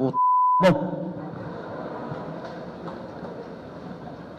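A broadcast censor bleep, one steady high beep about half a second long, masking a swear word in the speech. It is followed by a steady low hum of background room noise.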